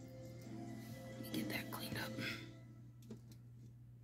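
A faint, soft voice, close to a whisper, from about one to two and a half seconds in, over quiet background music. A couple of light clicks follow a little after three seconds.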